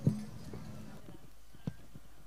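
Two dull, low thumps about a second and a half apart, the first much louder, over a low hum that fades out about a second in.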